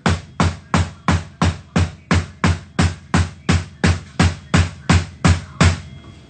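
A door being pounded with fast, even blows, about three a second, without a break.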